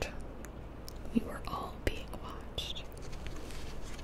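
A woman whispering softly close to the microphone, with a couple of small mouth clicks.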